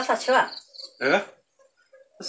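A cricket chirping in a quick run of short, high-pitched pulses that stops about a second in, alongside a person talking.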